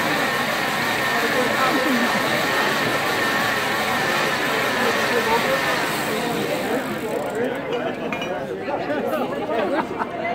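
Pedal-powered bicycle blender whirring as its blade spins through a smoothie, the pitch wavering with the pedalling; it winds down and stops about seven seconds in, leaving room chatter.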